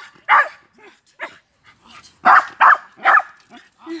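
Dog barking: a bark just after the start, a fainter one about a second in, then four quick barks about 0.4 s apart from a little after two seconds in.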